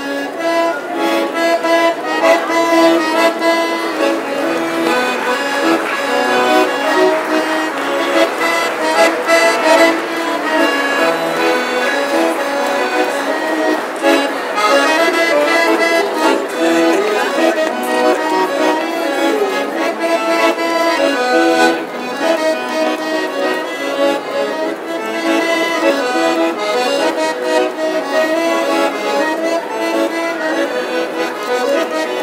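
Piano accordion, a red G. Scandalli, played solo: a melody over held chords, with notes sustained and changing throughout.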